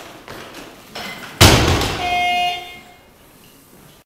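Loaded barbell with bumper plates, 125 kg, dropped onto a wooden lifting platform: one loud thud about a second and a half in, with the bar and plates ringing briefly after.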